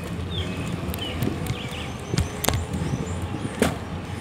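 Steady low road and running rumble of the vehicle carrying the camera, with a faint hum, broken by several sharp rattling knocks, the loudest near the end, and a few short high chirps in the first two seconds.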